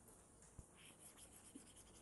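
Faint scratching and rubbing of a stylus across a tablet screen as handwritten ink is erased, with a light tap about half a second in.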